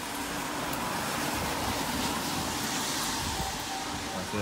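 Steady street noise of traffic on a wet road, a continuous hiss with a swell about three seconds in as a vehicle passes.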